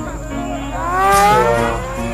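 Motorcycle engine revving, its pitch rising smoothly for about a second and a half, heard through the music video's soundtrack.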